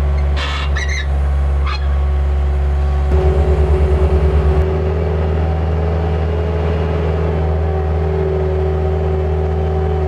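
Bobcat S185 skid-steer's diesel engine running steadily, with a few short high squeaks in the first two seconds. About three seconds in, a throbbing pulse at about six beats a second lasts a second and a half, then the engine note shifts and runs on steadily.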